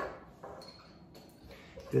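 Quiet handling as crimped monofilament line is fitted onto a force gauge test stand, with a short faint high ring about half a second in.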